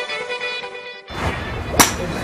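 Intro music cuts off about a second in, giving way to the ambience of an indoor golf dome; near the end comes one sharp crack of a golf club striking a ball.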